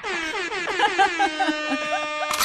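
Air-horn sound effect: one long blast that starts high and glides down in pitch over about the first second, then holds a steady tone.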